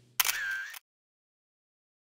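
A single camera shutter sound, a sharp click-and-whirr lasting just over half a second, near the start.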